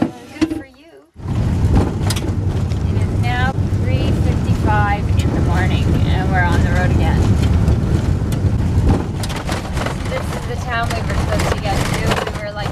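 Van driving on a gravel road, heard from inside the cab: a loud, steady rumble of tyres and engine that starts abruptly about a second in. Brief higher-pitched wavering sounds rise above it several times.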